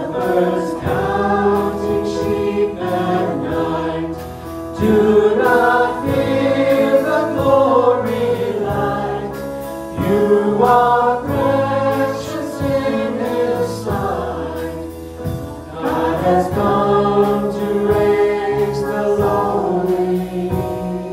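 A small group of singers singing a hymn in several-part harmony, in phrases of a few seconds, with keyboard accompaniment.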